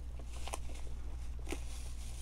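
A paper sticker being peeled slowly off a toy box's clear plastic window, its adhesive pulling away from the plastic with a few faint ticks, over a steady low hum.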